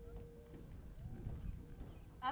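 Faint scattered knocks and rustles picked up by an outdoor podium microphone as a speaker settles in at it, over a steady low wind rumble on the microphone.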